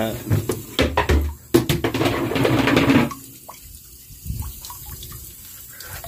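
Plastic lid of a Rubbermaid Roughneck trash can knocked and lifted off, with a loud rush of noise lasting about a second and a half. Then a thin stream of water runs quietly from a float valve into the water held in the can.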